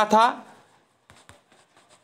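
Faint taps and light scratching of handwriting on a tablet touchscreen, with a few small clicks about a second in.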